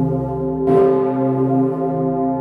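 The Pummerin, the roughly 20-tonne bell cast in 1951 by the St. Florian foundry with strike note C0, swinging and ringing close up in its bell chamber. Its clapper strikes once, a little under a second in, over the long hum of the earlier strokes.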